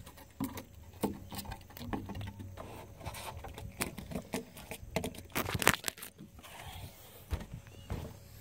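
Scattered light taps and knocks on a wooden deck as a small bluegill is hauled up on a handline and landed, with some handling noise.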